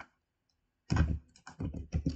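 Computer keyboard being typed on: quiet at first, then a quick run of keystrokes starting about a second in.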